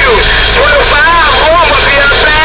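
Garbled voices coming through a Big Rig Series CB radio's speaker, distorted and hard to make out, over a steady hiss of static.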